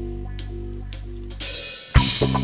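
Live band's drum kit and held low notes: a sustained low chord fades under a few light hi-hat ticks, then a cymbal wash swells up near the end as the band kicks back in.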